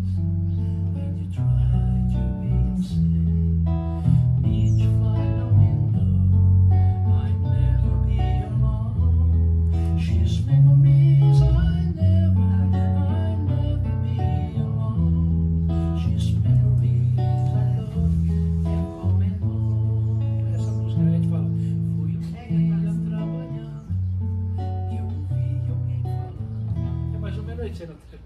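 Acoustic and electric guitars playing a hymn tune together without singing, the melody in deep, low notes moving from note to note. The playing stops right at the end.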